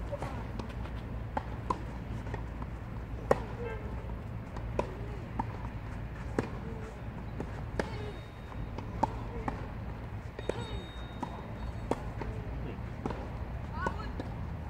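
Tennis balls struck by rackets in rallies on several clay courts: sharp pops every second or two, some near and some faint, the loudest about three seconds in. A low steady rumble runs underneath.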